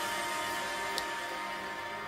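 Soft background music with steady held tones, and a faint tick about halfway through.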